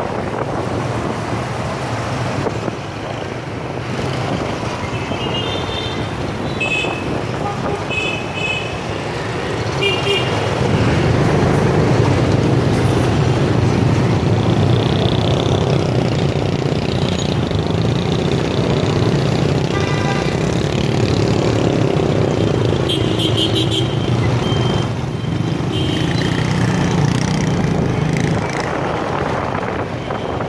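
Dense motorbike and scooter traffic on a city street, engines running steadily and getting louder about a third of the way in, with several short horn beeps in clusters.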